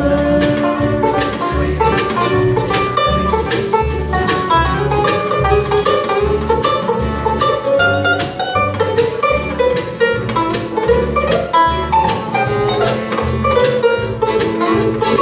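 A live acoustic bluegrass band playing: banjo, acoustic guitar, mandolin, fiddle and upright bass, the bass notes keeping a steady pulse under quick plucked notes.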